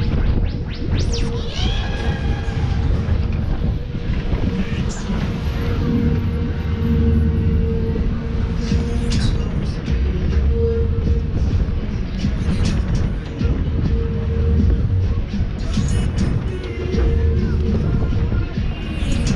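Fairground ride music and jingles playing over a steady low rumble from the ride's machinery, with a held tone running through it.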